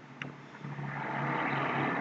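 A single computer-mouse click, then a low steady hum with a rushing noise that swells over about a second and holds.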